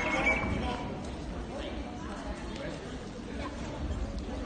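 Hall ambience in a large sports hall: faint, indistinct spectator chatter with a few soft knocks.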